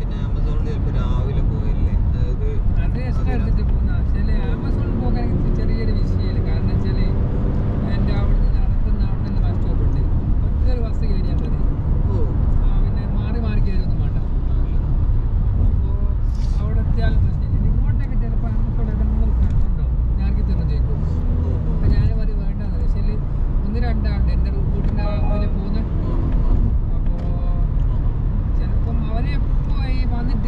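Steady tyre and engine rumble of a car driving at highway speed, heard from inside the cabin.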